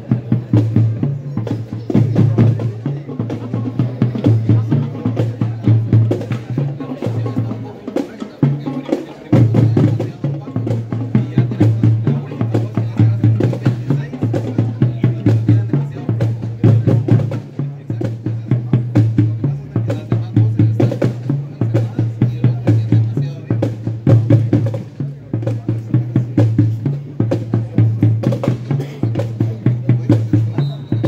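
School marching band playing with its drum section: snare and bass drums beating a steady, driving march rhythm, briefly dropping back about eight seconds in.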